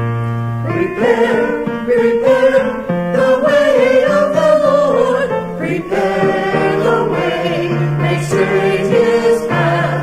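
Mixed church choir singing a hymn with digital piano accompaniment. The voices come in about a second in, over the piano's introduction.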